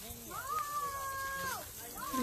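A single long, high-pitched call that rises, holds one steady pitch for about a second, then falls away.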